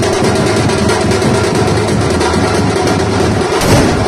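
Loud, fast, continuous beating of a street drum band, with a louder surge near the end.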